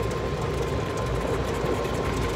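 Golf cart driving along: a steady running rumble with a faint, steady high whine over it.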